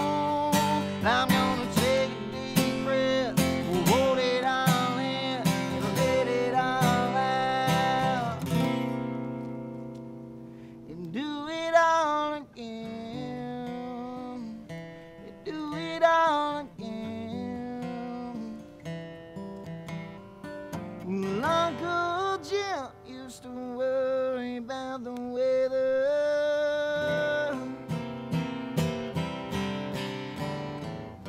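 Solo acoustic guitar strummed hard for the first eight seconds or so, then dying away to softer, sparser playing. A man's voice sings long, bending lines over it around the middle and again later.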